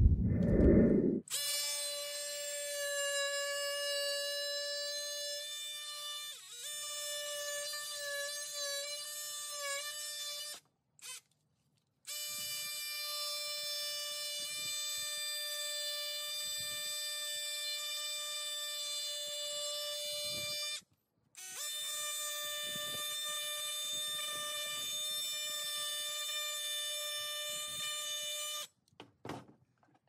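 Cordless oscillating multi-tool running with a steady high-pitched buzz as its blade cuts styrofoam. Its pitch dips and wavers as the blade loads up. It stops briefly twice, about 11 and 21 seconds in, and shuts off near the end. It is preceded by the last second of an intro music sting.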